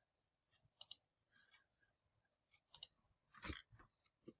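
Faint computer mouse clicks in near silence: two quick double clicks, one about a second in and one near three seconds, then a soft short noise shortly after.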